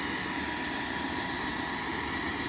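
Electric inflatable-screen blower running steadily, a constant rush of air with a thin whine, as it fills a large inflatable movie screen.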